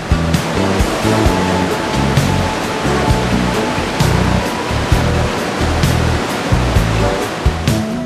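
Background music with a steady beat over the rush of a mountain torrent pouring through a rock gorge. The water noise thins out near the end, leaving the music.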